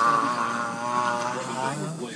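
A man's long, held yell on one drawn-out "nyaaa" vowel, the pitch wavering slightly, slowly fading and breaking off near the end.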